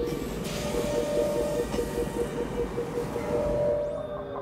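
Film sound effect of an Imperial probe droid hovering: a low mechanical rumble with a steady tone and a rapid pulsing tone, about seven pulses a second, under orchestral music.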